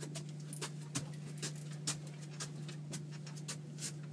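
Steady low hum of a boat's outboard motor, with irregular light clicks and taps from rod and reel handling.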